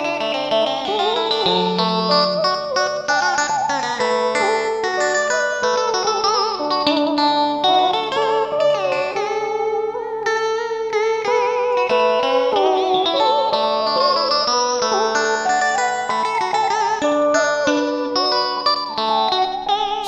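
Instrumental interlude in a Vietnamese tân cổ song: plucked string instruments play wavering, bent notes, with two long runs that sweep up and back down.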